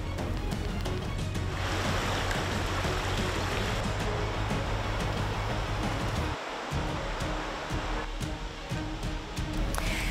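Background music with a steady low bass, under the rushing of a shallow river over stones. The water sound fades out about eight seconds in.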